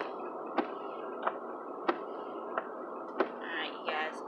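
Steady road noise inside a moving car, with a sharp tick about every two-thirds of a second.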